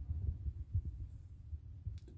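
Handling noise from a handheld phone being moved over papers: a low, uneven rumble with soft irregular thumps.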